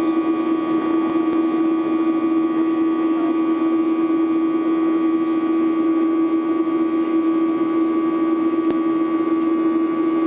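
Steady jet airliner cabin noise from a Boeing 737's CFM56 turbofan engines in flight: a constant drone with a steady low hum tone under the rush of air.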